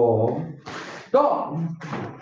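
A man's voice calling out twice, each call short and falling in pitch, with sharp hissing bursts between and after the calls.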